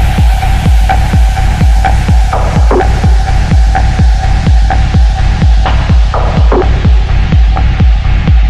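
Techno track: a steady four-on-the-floor kick drum beat about twice a second over bass, with a held synth tone and the treble slowly being filtered away.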